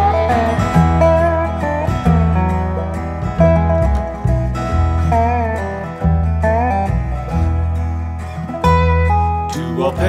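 Acoustic bluegrass string band playing an instrumental break, with plucked strings over a steady bass line and a lead line of sliding, bending notes.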